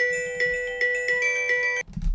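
A short electronic chime melody of pure, bell-like tones, a new note sounding every half second or so over held tones, cut off suddenly near the end.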